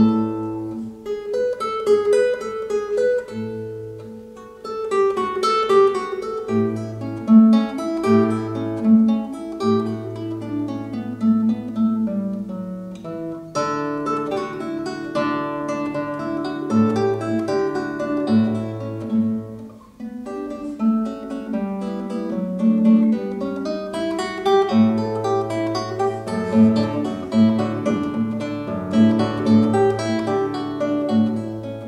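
Solo nylon-string classical guitar played fingerstyle: a steady stream of plucked melody notes over repeated bass notes, with a brief pause between phrases about twenty seconds in.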